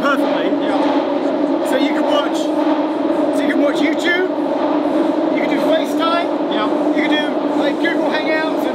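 Jubilee line tube train running through a tunnel: a loud, steady drone with a constant hum at two pitches, with people talking over it.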